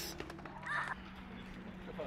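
A crow caws once, a short harsh call about two-thirds of a second in.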